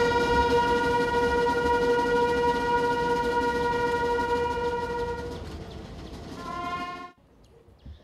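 A ceremonial brass call: one long held note for about five seconds that slowly fades, then a shorter, higher note that cuts off sharply about seven seconds in.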